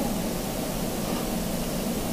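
Steady background hiss with no distinct sounds: room tone in a pause between words.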